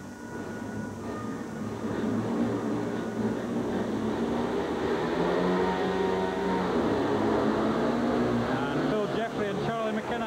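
Several speedway motorcycles' single-cylinder engines revving together at the starting gate. About two-thirds of the way through they pull away from the start, and the engine note swells and shifts in pitch as they accelerate.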